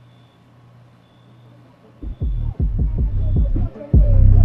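A steady low hum with a faint high beep repeating about once a second. About halfway through, loud, deep, rapid thumping begins abruptly and keeps going, each stroke sliding down in pitch.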